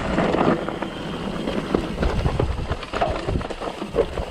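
Mountain bike rolling down a stony gravel trail: the tyres crunch over loose stones and the bike rattles with many small irregular knocks, over a low wind rumble on the microphone.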